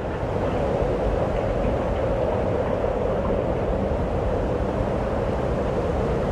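Aerial cable car in motion, heard from inside the cabin: a steady rumbling noise with no change in pitch or level.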